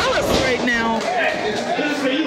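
Several people shouting, their raised voices rising and falling in pitch in a large hall.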